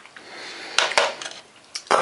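A white plastic spoon clicking lightly against a porridge bowl a few times as it is set down, with a faint rustle before.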